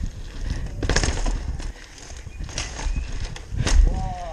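Mountain bike rattling and knocking as it rolls down stone steps and over paving cobbles, with a steady low rumble under a series of sharp jolts; the heaviest knock comes near the end.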